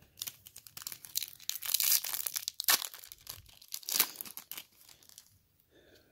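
Foil wrapper of a Topps Chrome trading-card pack being torn open by hand and crinkled, a dense run of crackles lasting about five seconds, loudest around two seconds in.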